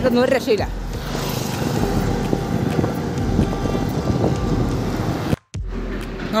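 Highway traffic noise with wind on the microphone as a lorry passes close alongside. The sound cuts out for a moment just after five seconds in.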